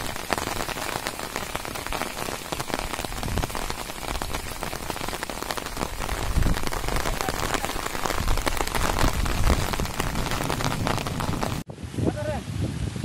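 Rain pouring steadily onto waterlogged open ground, a dense continuous patter. It cuts off suddenly near the end.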